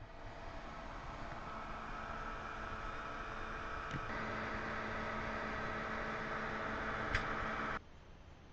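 Steady machine hum over a wash of noise, with a few faint steady tones. It changes slightly about halfway, has a sharp click near the end, then drops suddenly.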